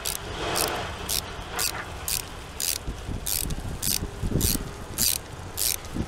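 Small hand ratchet with a T15 Torx bit clicking steadily, about two clicks a second, as it works loose a tight, rust-seized screw holding the fuel-line clip on the fuel rail.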